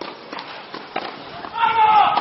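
A person's loud shout near the end, after a few light knocks.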